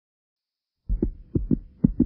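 Heartbeat-like sound effect: low thumps in lub-dub pairs, about two pairs a second, starting after a second of silence. A faint steady hum sits under it.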